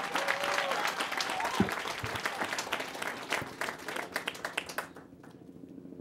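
Audience applauding, the clapping thinning out and dying away about five seconds in.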